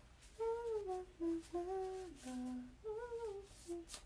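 A young woman humming a tune to herself, a run of held and sliding notes that rise and fall.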